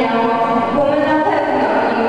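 Voices singing a slow melody in long held notes that step from one pitch to the next.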